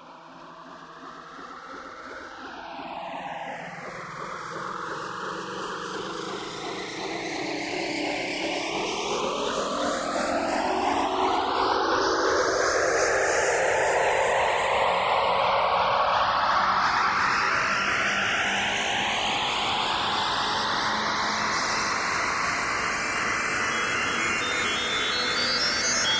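Intro build-up of an electronic bass-music track: a whooshing, jet-like swell that grows steadily louder, its tone sweeping down for the first several seconds and then rising again.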